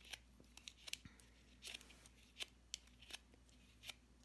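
Faint short scrapes and rustles of cardstock, about ten at irregular intervals, as a bone folder is drawn over the petals of a small die-cut paper flower to curl them.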